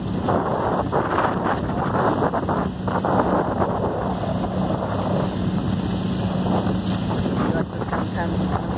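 Motorboat underway at speed: the steady hum of its engine under the rush of water along the hull and wind buffeting the microphone.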